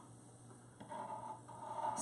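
Faint scraping of a metal spatula drawn through buttercream along the side of a cake, rising softly about a second in.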